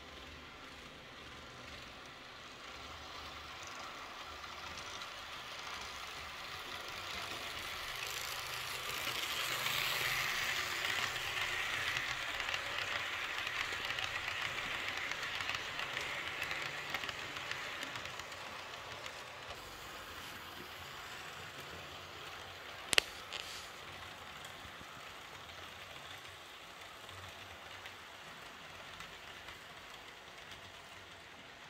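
Märklin H0 model passenger train rolling past on the track: the mechanical running noise of the E 424 locomotive, which has no sound module, and its coaches' wheels. It grows louder to a peak about ten seconds in and fades away by about eighteen seconds. A single sharp click comes a few seconds later.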